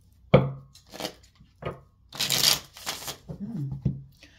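A small deck of paper oracle cards being handled and shuffled by hand. There is a sharp knock about a third of a second in, a few soft clicks, then about a second of riffling cards near the middle.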